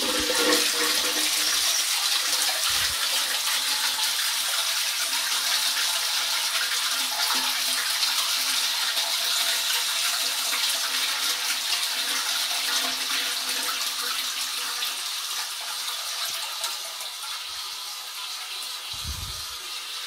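Low-level Royal Venton New Coronet toilet cistern being flushed: the handle is pulled and water rushes down the flush pipe and swirls through the pan, loud and steady, then gradually dies down over the last few seconds into a quieter hiss.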